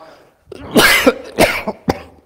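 A person makes three short, loud throaty bursts, each a non-speech vocal sound such as a cough or a laugh, starting about half a second in. The last burst, near the end, is the shortest and sharpest.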